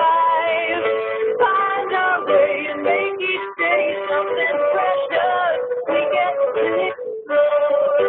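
A song playing: singing voices holding long notes that glide between pitches, over instrumental backing.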